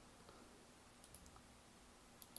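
Near silence with two faint computer mouse clicks close together about a second in.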